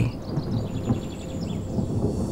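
Low, steady rumble of a distant thunderstorm, with faint high chirps above it in the first second.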